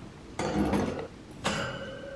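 Metal wire cage bars rattling and scraping twice, about a second apart, as a pink perch is fitted onto them; the second contact leaves a brief metallic ring.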